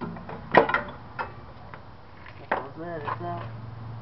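Front CV axle being worked out of the differential: one sharp metallic clunk about half a second in, with lighter clicks around it. A short stretch of voice follows over a low steady hum.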